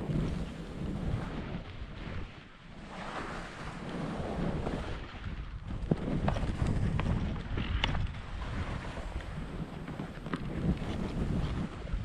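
Skis hissing and scraping over snow through a series of turns, the rush swelling and fading with each turn, with wind buffeting the action camera's microphone. A few sharp clicks from the skis around the middle.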